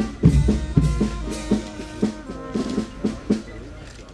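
Brass band music with a regular bass drum beat, the sound of the municipal band playing at the ceremony.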